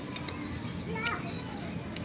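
Background chatter of children and other people, with a few light metallic clicks of hand tools on a steel shaft, about a second apart.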